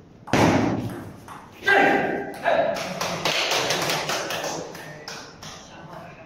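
A table-tennis point being played: sharp taps of the ball off the bats and the table, mixed with loud voices.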